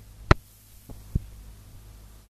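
A low steady electrical hum with three sharp clicks, the first about a third of a second in and the loudest, then two fainter ones about a second in.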